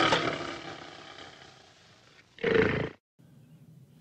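A music chord dying away, then a single short big-cat roar, about half a second long, a little past halfway through.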